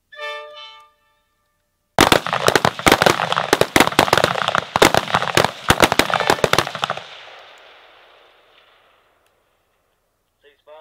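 A firing line of M-16 rifles shooting many rapid, overlapping shots for about five seconds, then the echo dying away over about two seconds. A short pitched tone sounds just before the shooting starts.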